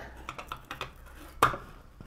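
Light clicks and taps of a finned aluminium heatsink and a metal plate being handled and set down on a solar panel's glass, with one louder knock about one and a half seconds in.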